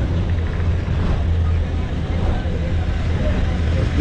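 Steady low rumble of a bus engine running, with faint voices in the background.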